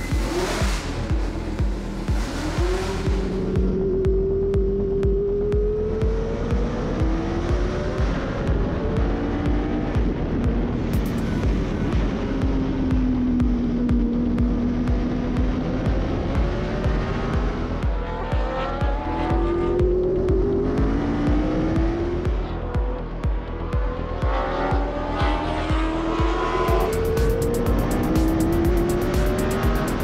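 Historic Formula One racing cars at speed, their engine notes climbing in pitch through the gears again and again, over background music with a steady beat.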